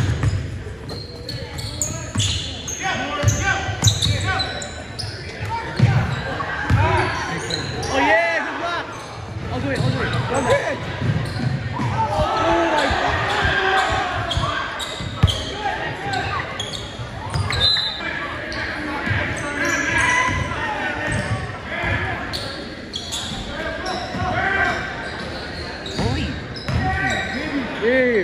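Basketball bouncing on a hardwood gym floor during play, repeated thuds echoing in a large hall, under the voices of players and spectators.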